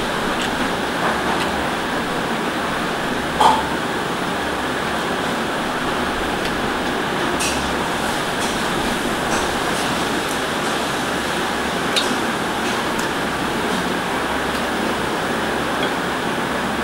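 Steady whir of a room fan, with a few light clicks of fingers and rings on a glass plate while rice is eaten by hand. The sharpest is a ringing clink about three and a half seconds in.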